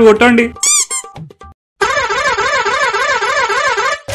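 A voice finishes speaking, then a short chirping sound effect and a brief silence. After that comes a steady electronic warbling tone that wavers up and down in pitch about four times a second.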